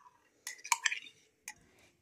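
A metal spoon clinking and tapping a few times against the cup and the glass bowl as sour cream is scraped out into the batter. The short clicks are grouped about half a second to one second in, with one more about halfway through.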